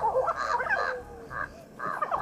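Jamaican crows calling: a quick run of jabbering, gurgling notes, then a short lull with a single note before the calling starts again near the end.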